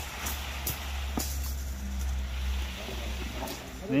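Steady low drone of a concrete pump running while the hose is pushed through before the concrete arrives, with a few light clicks over it.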